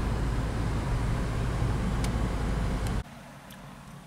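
Cabin noise of a Chevrolet Vectra GLS on the move: a steady low engine and road rumble. About three seconds in it drops suddenly to a much quieter steady hum.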